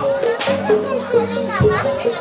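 Javanese jaranan gamelan music: a repeating two-note figure on tuned metal percussion, with a couple of low drum strokes. Voices of people nearby talk and call over it.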